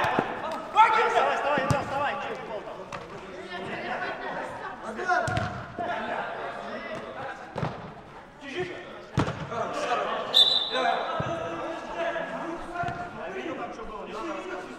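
Players' voices calling out across a large, echoing indoor hall, with several sharp knocks of a football being kicked.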